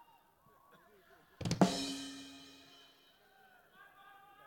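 A single drum-kit hit about a second and a half in, a drum and cymbal struck together, that rings out and fades over about a second and a half.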